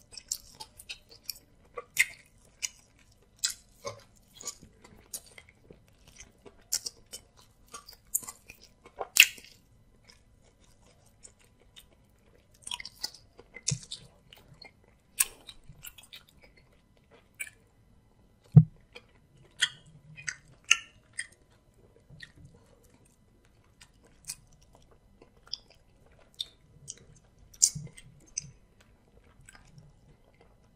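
Close-miked eating sounds of amala, soup and meat eaten by hand: wet chewing, lip smacks and finger-licking, heard as an irregular run of short sharp clicks and smacks with brief pauses. A single louder knock comes just past halfway through.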